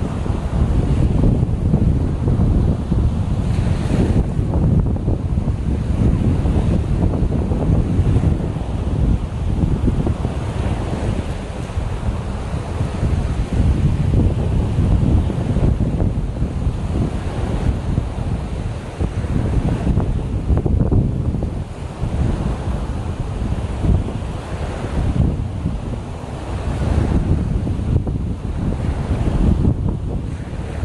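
Strong wind buffeting the microphone in uneven gusts, over the wash of choppy waves breaking on a sandy shore.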